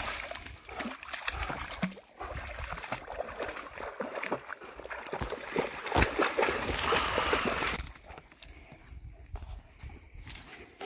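Two dogs, a Great Pyrenees and a pyredoodle, splashing and churning through shallow muddy pond water as they play-fight. The splashing is loudest about six to eight seconds in, then dies down to a quieter patch.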